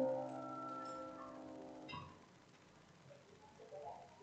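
The final held chord of the closing keyboard music fades and is released about two seconds in. Near-quiet room tone follows, with faint voices of people talking starting near the end.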